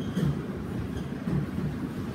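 Steady low rumble of room background noise in a pause between spoken words.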